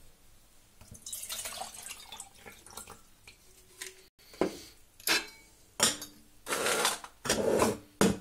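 Water poured from a bottle into a metal cook pot, followed by several loud metallic clanks and scrapes as the pot, handles rattling, is lifted and set down on a wire pot stand over a meths stove.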